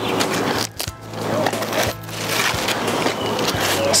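Lettuce leaves rustling and snapping as the dead outer leaves are stripped from a freshly cut lettuce head, with a run of crisp crackles and tearing sounds.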